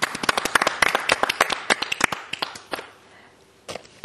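A small group clapping, with distinct separate claps that thin out and die away about two and a half seconds in, then a last couple of stray claps near the end.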